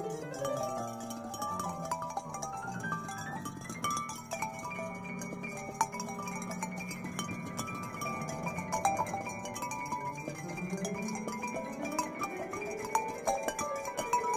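Solo piano music: rippling runs of notes that climb slowly from low to high over a few seconds, then fall back and climb again, with the notes left ringing.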